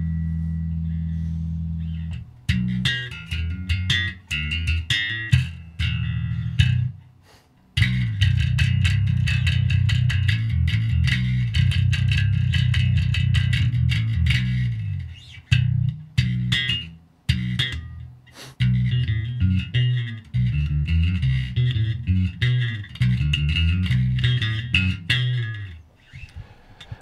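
Spector-style active/passive electric bass with handmade Juraj Turza pickups, played through an amplifier: a long held low note, then rhythmic riffs. After a short break about eight seconds in comes denser, faster riffing with brief pauses until near the end.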